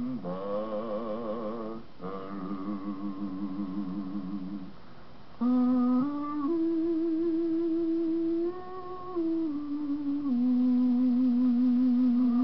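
Wordless humming of a slow song's melody in long held notes with vibrato, getting louder and steadier about halfway through.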